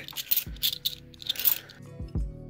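Australian 50-cent coins clinking and scraping against each other as they are slid through the hand, in several short bursts over the first second and a half. Soft background music with a low beat plays underneath.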